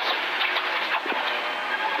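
Steady cabin noise of a Toyota GR Yaris rally car driving at speed on a gravel stage: its 1.6-litre turbocharged three-cylinder engine and the tyres on loose gravel, heard as an even, thin rush with a faint engine tone.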